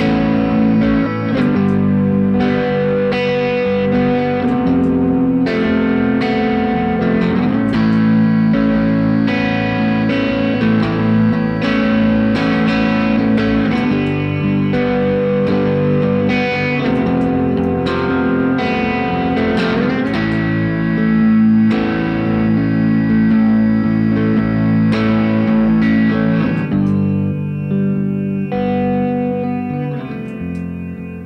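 Telecaster-style electric guitar played alone, with chords picked and strummed in a steady pattern and no singing. Near the end the playing thins out and gets quieter.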